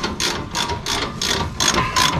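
Hand ratchet clicking in a quick, even rhythm, about four or five clicks a second, as the nut on a suspension anti-roll bar drop link is wound in.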